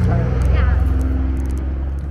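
A nearby motor vehicle's engine running with a steady low hum, fading away near the end.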